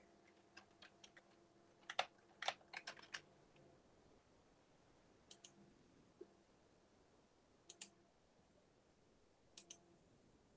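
Near silence broken by faint, irregular clicks of computer keys, a few at a time, in small clusters spread through the pause.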